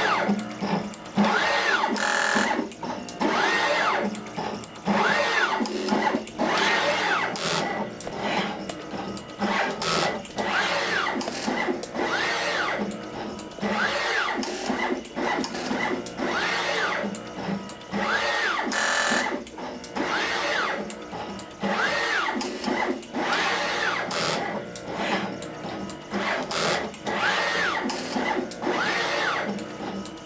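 NeoDen TM245P desktop pick-and-place machine running with both pick heads: its gantry motors whine up and then down in pitch about once a second with each move, among rapid sharp clicks from the mechanism.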